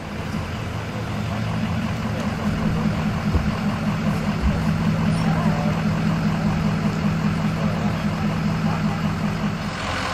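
A vehicle engine idling with a steady low hum, fading in over the first second or two.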